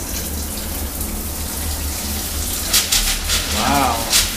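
Shower head running, a steady hiss of water spraying onto a tiled shower wall; in the last second or so the spray turns uneven and splashy.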